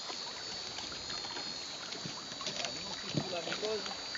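Sea water sloshing and lapping with a few faint small splashes. A faint voice comes in briefly about three seconds in.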